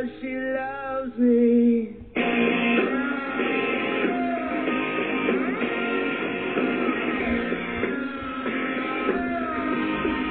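Rock song played over an FM radio broadcast: a sung line with guitar, then the full band comes in suddenly about two seconds in with strummed guitars.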